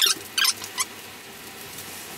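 Three short, high-pitched scrapes within the first second as metal brake parts and a screw are handled, then only a faint steady hiss.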